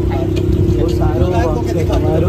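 Brief bits of a woman's speech over a steady low rumble and a constant hum at one pitch that runs under everything.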